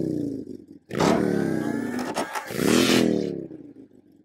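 Motorcycle engine revving in repeated bursts, the pitch of each falling away as it eases off, with a brief drop-out about a second in.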